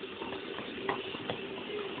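Dogs gnawing on elk antlers: a few faint clicks and scrapes about halfway through, over the steady background of a televised baseball game.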